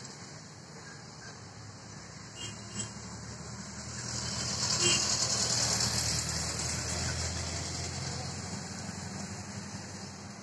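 An engine passing by, its sound swelling to a peak about five seconds in and then slowly fading, over a steady background hum.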